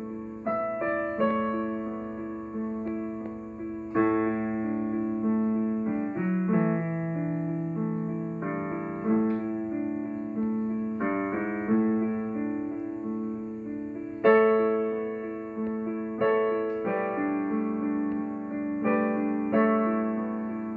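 Digital piano playing a solo piece: melody notes over chords, each struck and left to fade before the next. The loudest chords come about four seconds in and again around fourteen seconds.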